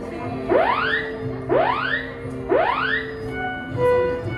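Three rising whoop alarm tones over public-address loudspeakers, one a second, each sweeping upward in about half a second: apparently a test of the emergency broadcast system. Background music plays steadily beneath.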